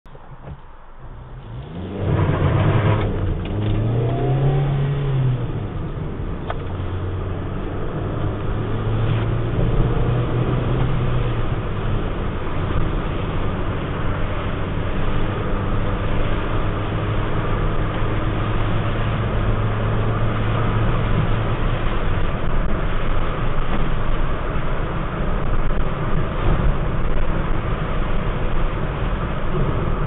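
Car engine and road noise heard from inside the cabin while driving. It starts about two seconds in, the engine note rising and falling as the car picks up speed, then holds a steady note before blending into steady road and tyre noise.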